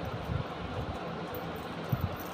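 Steady background hiss with a few soft, low thumps, about half a second in and again near the end.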